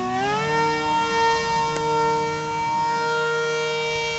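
Electric motor of a radio-controlled model jet throttled up for launch: a high-pitched whine that finishes rising in pitch in the first half second, then holds steady, fading slightly as the plane flies away.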